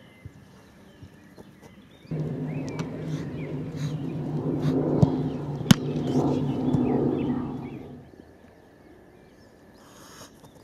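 A motor engine runs with a steady low hum that starts suddenly about two seconds in, swells, and fades out near eight seconds. About halfway through, two sharp thuds of a football being struck and caught stand out, the second the loudest sound.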